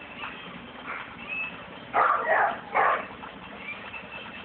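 Two loud, short animal calls about two seconds in, one right after the other.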